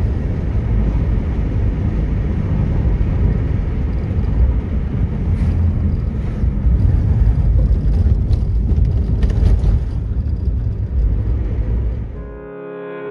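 Road noise of a car in motion: a steady, loud, low rumble of engine, tyres and wind. A few brief knocks or rattles come through in the middle.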